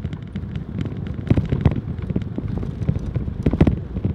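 Vehicle driving on a rough dirt road, heard from inside: a steady low rumble with a dense run of irregular rattles and knocks, the strongest jolts about a third of the way in and again near the end.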